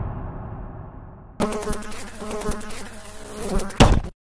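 Intro title sound effect: a fading low rumble, then about a second and a half in a sudden buzzing, crackling tone with rapid even pulses, ending in a short loud burst just before the end.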